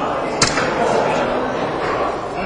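A soft-tip dart striking an electronic dartboard: one sharp click about half a second in, over steady crowd chatter in a large hall.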